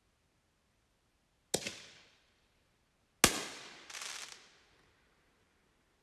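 Flamingo Bomb consumer artillery shells going off: two sharp bangs nearly two seconds apart, the second louder, each fading away quickly. The second bang is followed about half a second later by a shorter, rougher burst of noise.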